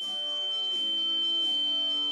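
A steady, high-pitched ringing tone, a sound effect imitating the ringing in the ear of tinnitus, starts abruptly and holds over soft sustained background music.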